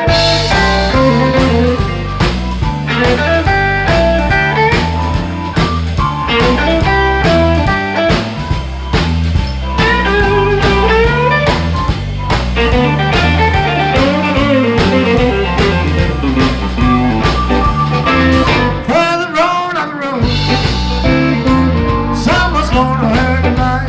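Live blues band playing an instrumental passage: electric guitar, bass guitar, a Pearl drum kit and a Nord Electro keyboard, with some notes bent in pitch.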